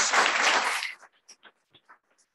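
Applause from a small room of people. The clapping is dense for about the first second, then falls away suddenly to a few scattered single claps.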